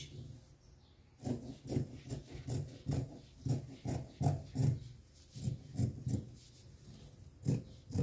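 Scissors cutting through cotton tricoline fabric, a run of irregular snips, two or three a second, starting about a second in.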